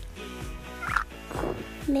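Cartoon tablet-game sound effects: short squeaky animal noises and a bright blip about a second in, over light music.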